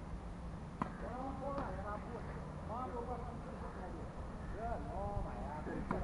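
Tennis racket striking the ball on a serve about a second in, a single sharp pop, with a few fainter ball knocks later, over a steady low rumble.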